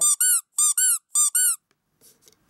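Naganegiman squeaker toy figure squeezed three times, each squeeze giving a quick pair of high, arching squeaks, the last near the end.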